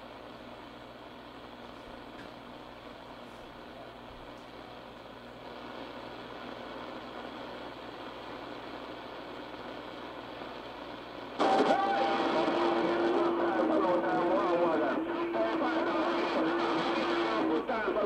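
A shortwave receiver tuned to CB channel 6 (27.025 MHz AM) hisses with band static for about eleven seconds, then a strong station keys up suddenly. Its transmission is an unintelligible voice over a steady low tone that holds for several seconds.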